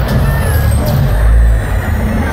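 Show-intro sound effects over a loud arena PA: a deep bass rumble that swells a little after a second in, with falling high swooshes and a hissing noise over it.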